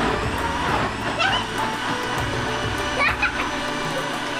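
Electric mixer-grinder running steadily, blending rambutan flesh with milk and sugar in its jar.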